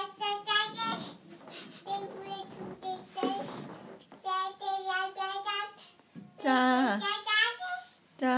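A toddler girl's high voice babbling in a sing-song, in short phrases with some long held notes and a falling slide in pitch near the end.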